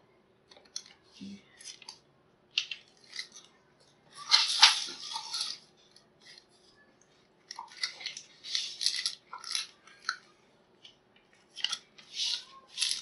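Plastic food containers and a stiff paper label handled on a tabletop: a run of short clicks, scrapes and rustles with pauses between them, the longest scrape about four seconds in and a cluster of quicker ones near the end.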